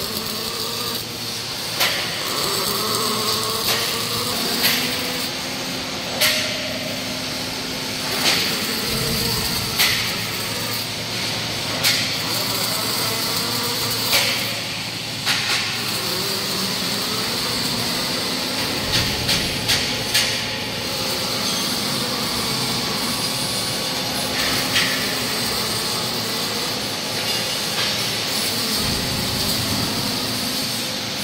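Welding robot's arc hissing and crackling steadily over a low machine hum, with short sharp clicks every second or two.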